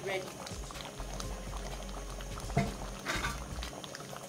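A pot of ofe nsala (Nigerian white soup) bubbling on the boil, with a steady run of small bubbling pops. There is a single low thud about two and a half seconds in.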